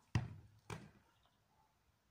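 A ball kicked, a short dull thump, then a second, softer thud about half a second later as it is caught.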